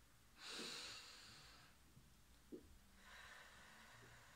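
A woman taking deep breaths through her nose: one strong breath about half a second in, and a fainter one starting about three seconds in.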